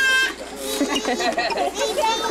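Children's voices: a high, held shriek from a child that ends about a quarter second in, then children chattering and calling out.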